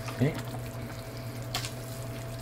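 Hot pot broth simmering in a large steel pot on a stovetop: a steady, even noise over a low steady hum, with one light click about one and a half seconds in.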